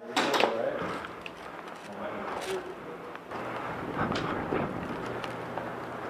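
Indistinct distant voices with a few faint clicks and knocks, and a low hum that comes in about halfway through.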